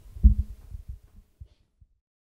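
Low thumps and rumble of a handheld microphone being handled as it is lowered: one strong thump about a quarter second in, then weaker knocks dying away over about a second and a half before the sound cuts out.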